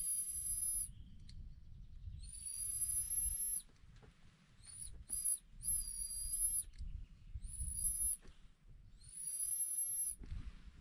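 Mouse-squeak predator call sounding in a series of about seven thin, high-pitched squeals, most around a second long with two very short ones near the middle, mimicking a mouse to lure foxes and raccoon dogs.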